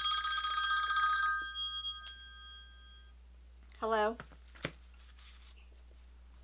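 iPhone ringtone ringing loudly in bell-like tones, stopping about a second in as the call is answered, a few tones fading out over the next two seconds.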